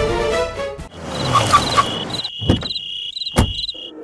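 Orchestral string music stops about a second in, giving way to a night ambience of crickets chirping in short repeated pulses. Two sharp knocks come about a second apart near the end.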